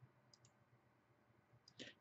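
Near silence: room tone, with a few faint clicks about half a second in.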